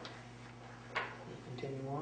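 Two short, sharp clicks about a second apart over a steady low hum, then a man's voice beginning to speak near the end.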